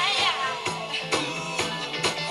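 Live rock band playing, with electric guitar, bass and drums, and a woman's voice wavering and sliding in pitch near the start.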